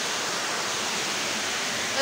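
A steady, even hiss with no change in level and no distinct events.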